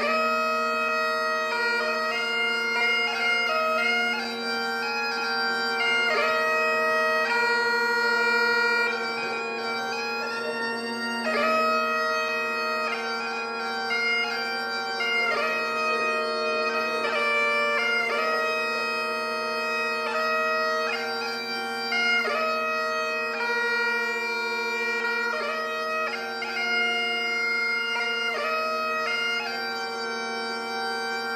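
Great Highland bagpipe played solo: steady drones sounding under a chanter melody that moves quickly from note to note.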